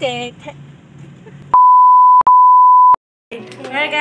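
An electronic bleep tone added in editing, one steady pitch sounding twice back to back for about a second and a half in all, cutting in and out sharply with silence around it. Speech is heard briefly at the start, and talk resumes near the end.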